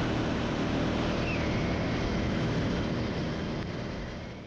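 Motorcycle riding at speed on a highway: a steady rush of wind over the microphone with the engine running low underneath, fading out near the end.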